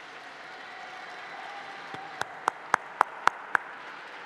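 Audience applauding: a steady spread of clapping from a room full of people. In the second half, six sharp, louder claps close to the microphone come in quick succession, about four a second.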